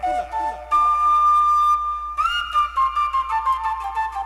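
Cumbia flute intro played through a large sound system: a solo flute plays a long held note, then slides up and descends step by step through a phrase, with a light ticking rhythm underneath and no bass yet.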